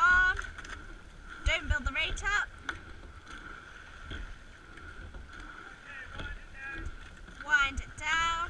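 Sculling boat underway: oar blades working the water and low knocks from the riggers at each stroke, with some wind on the microphone. Short high-pitched calls break in near the start, about two seconds in, and again near the end.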